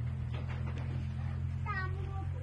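A short high-pitched call with a bending pitch near the end, over a steady low hum.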